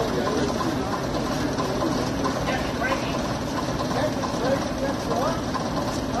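Leyland OPD2/1 double-decker bus's six-cylinder diesel engine idling steadily, with people chatting in the background.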